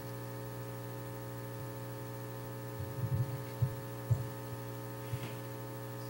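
Steady electrical mains hum with its buzzy overtones, and a few soft low thumps about halfway through.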